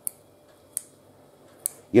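Tender wild asparagus stalks snapped by hand one at a time: three short, crisp snaps spread across two seconds.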